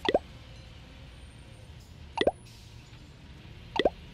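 Three short rising 'bloop' pops from a smartphone's message-notification sound, one for each incoming chat message, spaced about two seconds and then a second and a half apart.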